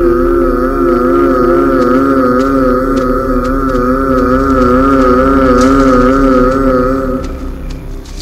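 Eerie horror-film background score: a sustained synthesized chord whose pitch wavers evenly up and down, fading away about seven seconds in.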